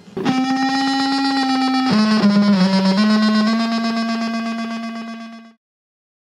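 Electric guitar played through a Big Muff fuzz pedal and a small amp: a long distorted note, then about two seconds in a slide down to a lower note that is held and slowly fades before cutting off abruptly near the end.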